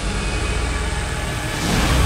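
Magic-beam sound effect: a loud, steady low rumble with a rushing surge that swells near the end.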